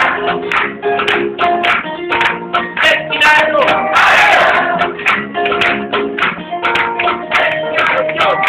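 Live band music: an instrumental passage with strummed acoustic guitar over a steady, regular beat.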